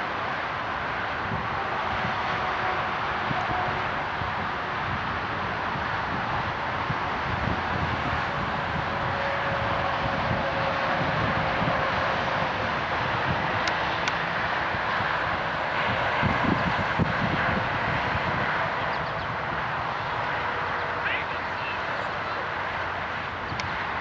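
Outdoor ambience on an open field: a steady rush of noise with an uneven low rumble, faint indistinct voices of players, and a couple of brief clicks in the second half.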